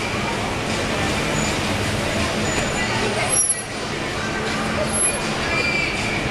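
Busy street ambience: steady traffic noise with people talking, and a short knock about three and a half seconds in.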